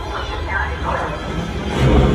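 Motion-simulator ride soundtrack: a character's voice over a steady low rumble that swells near the end.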